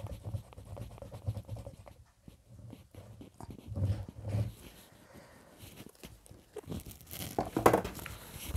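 Glue being squeezed from a plastic squeeze bottle onto paper, with small clicks and soft knocks of the bottle and hands on the cutting mat, then a louder rustle of paper near the end as the covered card is picked up.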